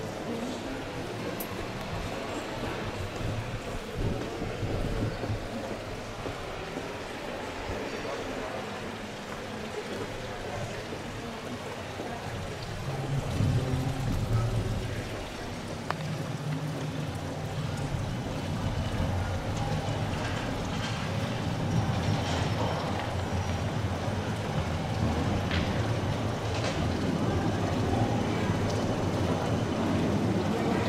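Busy street ambience: indistinct voices of passers-by over a low rumble of traffic, growing louder in the second half.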